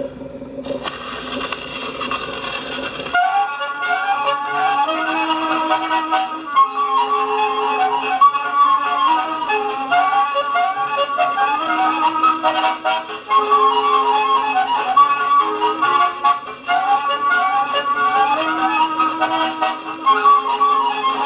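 A 1940 78 rpm record of a polka playing acoustically on a Columbia Grafonola: surface hiss of the steel needle in the lead-in groove from about a second in, then the band's brisk polka tune with quick repeating melodic runs from about three seconds in.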